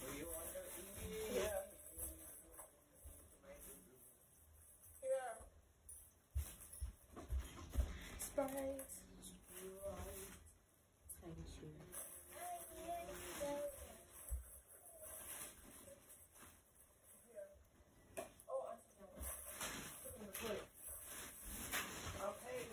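Faint, indistinct voices in a small room, coming and going in short stretches, with a few soft low knocks around the middle.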